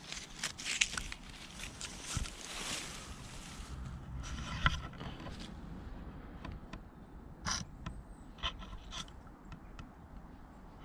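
Leaves and plant stems rustling and brushing as a hand pushes through foliage for the first few seconds, then scattered light clicks and crunches of handling on wood chips.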